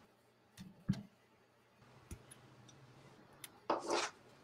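Light plastic clicks and ticks from model-kit parts and runners being handled and clipped with hobby nippers, with a short knock about a second in and a louder rattling clatter near the end.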